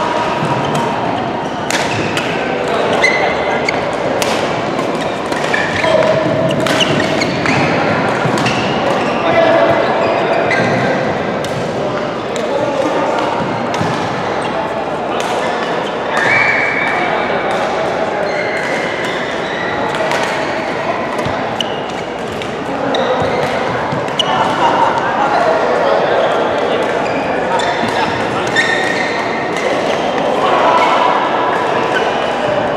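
Badminton rackets hitting a shuttlecock during rallies, sharp cracks coming irregularly throughout, echoing in a large sports hall over a constant background of players' voices.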